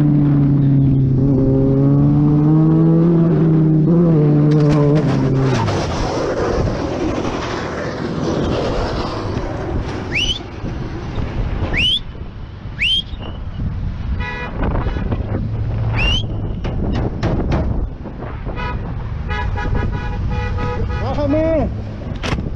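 A sportbike engine running at high revs, its pitch rising and falling, until it drops away about five seconds in. Road and wind noise with clattering follows, along with several short, sharp rising squeaks, and voices near the end.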